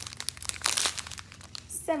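Small clear plastic bags of square resin diamond-painting drills crinkling as they are handled, with a busy burst of crackling about half a second to a second in.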